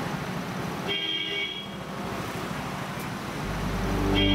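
Street traffic ambience with a short, pitched toot about a second in, then a low rumble swelling near the end.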